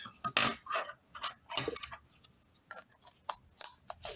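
Empty plastic shotgun hulls with metal heads handled and pushed together, a 20-gauge hull being tried inside a 12-gauge hull: a string of irregular light clicks and scrapes.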